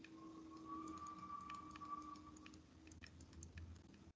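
Faint, irregular light clicks and taps of a stylus on a tablet screen as words are handwritten, over a faint steady hum.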